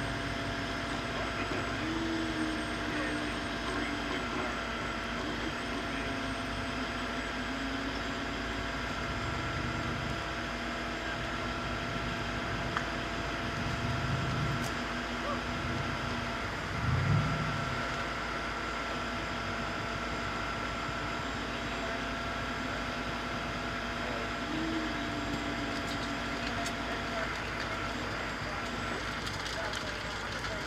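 Tow truck engine running steadily while its winch cable drags a car up a riverbank. Two low thumps come about halfway through.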